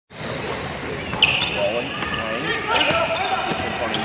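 Basketball being dribbled on a hardwood court, with sneakers squeaking sharply a little over a second in and again near three seconds, amid players' voices.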